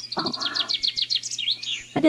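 Bird chirping: a quick run of about a dozen short, high, falling notes, followed by a few sharper up-and-down chirps.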